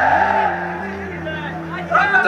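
A man's voice singing long held notes that step from one pitch to the next, the melodic chanting used in a Bangla waz sermon.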